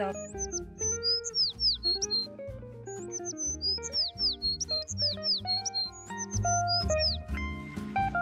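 Background music: plucked guitar notes over a bass line, with a run of short, high, falling chirps repeating through the track.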